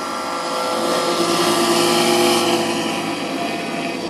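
Brushless outrunner motors with propellers on a homemade RC hovercraft, the lift fan and thrust motor, whining steadily; the throttle comes up about half a second in and eases off after about two and a half seconds.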